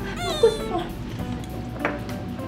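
A short, whiny, meow-like voiced sound about half a second long, its pitch bending. It fits the tearful caption of someone whining for glass noodles. Light background music runs under it.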